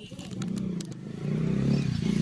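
A vehicle engine running with a low hum, getting louder about half a second in and louder again from just past a second.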